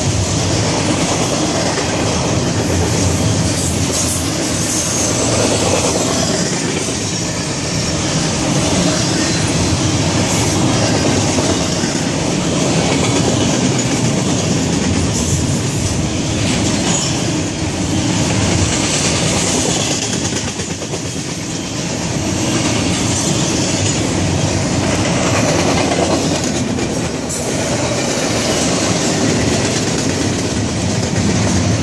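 Double-stack intermodal well cars rolling past close by, their steel wheels on the rails making a steady, loud running noise.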